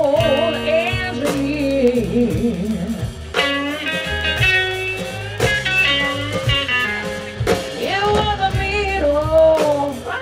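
Live electric blues band playing: electric guitar lead line with bent, wavering notes over electric bass and drum kit.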